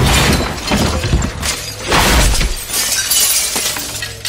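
Glass shattering and crashing in a film scene: a run of sharp breaking impacts over a low rumble. The rumble stops about halfway through and the crashes thin out near the end.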